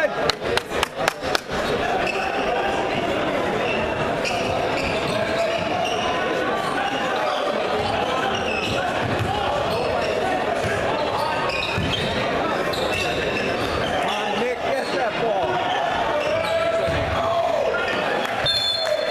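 A basketball bounced on a hardwood gym floor about seven times in quick succession in the first second and a half, then steady chatter from a crowd in a large, echoing gym.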